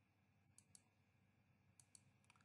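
Near silence, broken by a few faint short clicks: two about half a second in and two more near the end.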